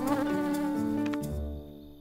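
Cartoon sound of insect wings buzzing, held pitched tones that shift step by step, fading out in the last half second.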